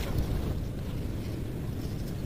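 Wind buffeting the microphone outdoors: a steady low rumble.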